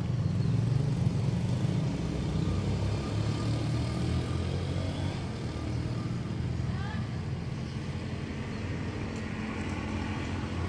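Steady low rumble of a motor vehicle engine running nearby, outdoor traffic sound, louder at the start and easing off a little.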